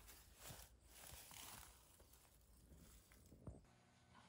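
Near silence: faint background noise with a few soft ticks, the clearest near the end.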